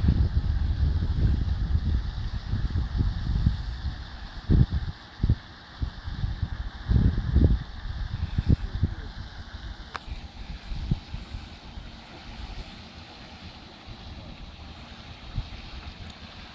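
Wind buffeting the phone's microphone in uneven gusts, heaviest in the first half and easing after about ten seconds, with a faint steady high tone under it that stops at the same point.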